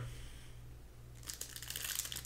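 Foil wrapper of a Donruss Optic basketball card pack crinkling as it is picked up and handled, starting about a second in, over a faint low hum.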